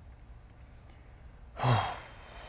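A man sighs once, about one and a half seconds in: a short breathy exhale with a low voiced tone that falls away. Before it there is only quiet room tone.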